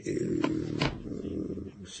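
A man's low, murmured voice sound between sentences, a drawn-out hesitation under his breath, with two faint mouth clicks about half a second apart.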